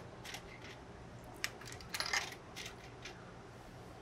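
Coins being fed into a drink vending machine's coin slot: a handful of light metallic clicks and clinks, spaced about a second apart.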